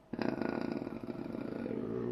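A man's drawn-out, creaky hesitation sound, "uhhh", held for nearly two seconds.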